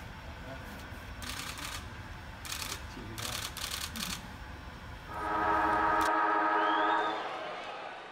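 Room tone with a few short hissy rustles in the first four seconds, then, about five seconds in, a loud sustained synthesized chord with a brief arching whistle on top, held for about two seconds and fading out: an outro logo sting.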